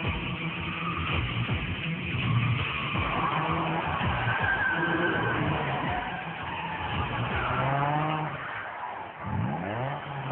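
Car engine revving hard with tyres squealing as the car drifts. Near the end the revs climb steeply in quick rising sweeps.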